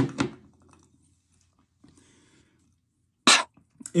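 A man's brief non-speech vocal sounds: a sudden one at the start that fades over about half a second, a faint breath about two seconds in, and a short sharp one near the end.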